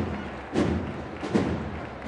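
A bass drum beating a slow, steady pulse, about three strikes three-quarters of a second apart, over the murmur of a large crowd.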